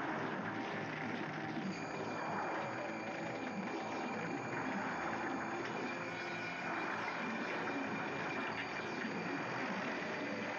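A steady, dense drone from a horror film's soundtrack, with faint steady high tones joining about two seconds in and no speech.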